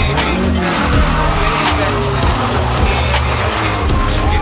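Music with a steady beat over a car's engine and tyres squealing as it spins in tight circles on asphalt.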